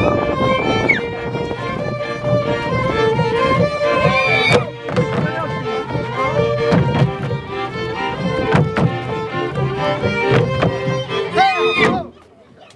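A live highlander folk string band of fiddle and double bass plays a lively dance tune, with sharp footfalls from dancers on wooden boards. The music stops abruptly at the end.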